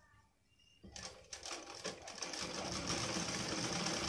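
Domestic sewing machine stitching through cotton fabric: after about a second of quiet and a few clicks, it picks up speed and runs steadily.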